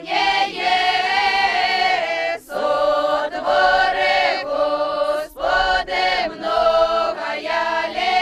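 A group of young Ukrainian folk singers, mostly girls, singing a folk song together without accompaniment, in phrases broken by short breaths about two and a half and five seconds in.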